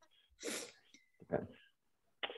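Two short, breathy bursts from a person's voice, one about half a second in and a fainter one about a second and a half in.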